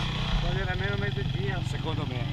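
Two-stroke enduro motorcycle engine idling steadily, with voices talking over it.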